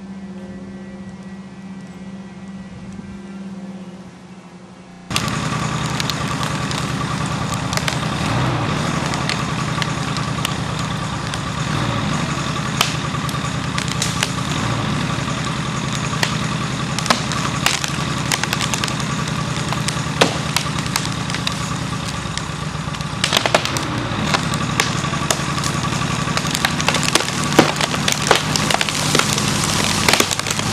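An engine running at a low, steady idle, then jumping suddenly to full power about five seconds in and running hard. Sharp cracks and snaps of splintering wood come more and more often near the end as a tree trunk starts to rip.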